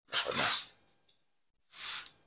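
Paper posters sliding and rustling across a wooden desk as they are laid out: two brief swishes, one just after the start and a softer one near the end.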